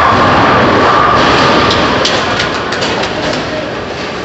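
Bowling ball rolling down the lane, a steady rumble over the din of a busy bowling alley, with a few faint clicks.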